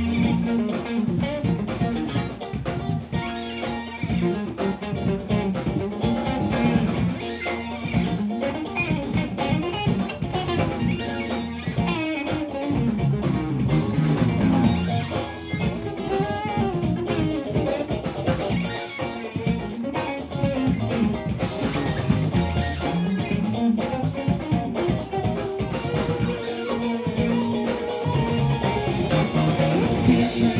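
Live rock band playing an instrumental passage: electric guitars over bass guitar and drum kit, with keyboard.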